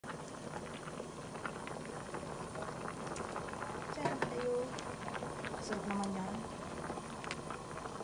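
Ginataang labong (bamboo shoots, crab and shrimp in coconut milk) boiling in an aluminium pot, with a steady, dense crackle of popping bubbles.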